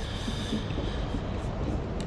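Steady low rumble with a faint hiss underneath, with no distinct events.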